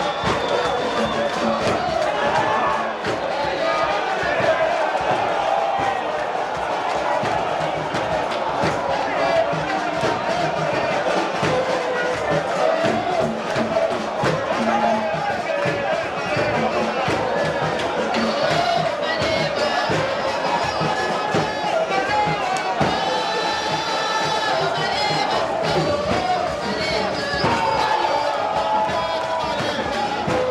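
Music mixed with crowd noise, chanting and cheering, continuous throughout.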